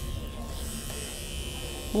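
Oster A6 electric dog clippers running with a steady buzz while trimming a Bichon Frisé's coat.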